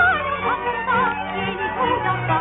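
Old recording of a Hungarian song: a woman singing with wide vibrato over instrumental accompaniment. The sound is dull, with nothing above about 4 kHz.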